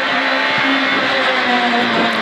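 Peugeot 206 XS Group A rally car's engine running hard at steady revs, heard from inside the cabin.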